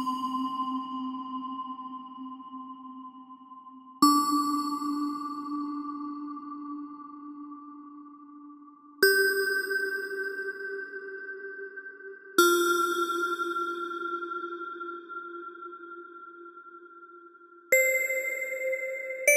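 Slow meditation music of struck bell tones: one ringing on from a strike just before, then four more strikes every few seconds, each at a different pitch. Each is left to ring and fade slowly before the next.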